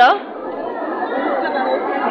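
Steady chatter of a dense crowd, many voices blurred together with no single speaker standing out. A voice trails off at the very start.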